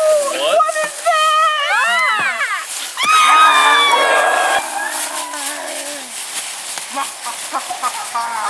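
Several people screaming in high, gliding shrieks, the loudest about three seconds in, then fading into the rustle of feet running through dry fallen leaves.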